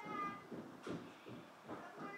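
A faint, high-pitched, drawn-out call in the background at the start, then a brief tap just under a second in, over low household noise.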